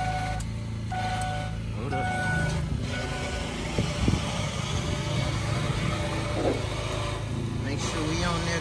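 A 2003 Ford Explorer's warning chime beeping about once a second for the first three seconds, with the key on and the driver's door open while the battery is too weak to start it. Under it runs a steady low engine hum, with a couple of knocks about four seconds in.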